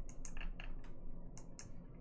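Light clicking of a computer mouse and keyboard: a scattered run of short, sharp clicks, several in quick succession.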